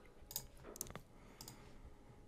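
A few faint computer mouse clicks, spaced apart, as effect settings are adjusted on the computer.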